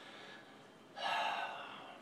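A man's single heavy breath about a second in, starting strong and fading away over about a second.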